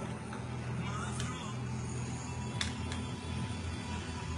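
Long metal bar spoon scooping frozen cocktail slush from a plastic tub, giving a couple of light clicks over a steady low background hum.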